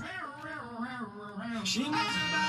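A quiet voice-like sound, one continuous warbling tone whose pitch glides up and down in waves, with no clear words.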